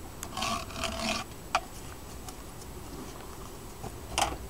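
Knife cutting mesh against a wooden hive box: a rasping scrape lasting under a second near the start, then a few sharp clicks.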